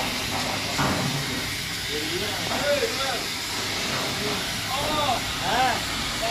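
Voices calling out, twice and loudest near the middle and again near the end, over a steady hiss, with one short knock about a second in.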